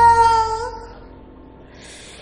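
A female jazz singer holds a long, steady sung note that bends slightly upward and breaks off about half a second in, then fades away to quiet.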